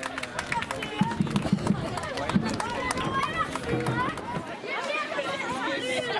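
Several voices talking and calling over one another in unintelligible chatter, with scattered sharp clicks.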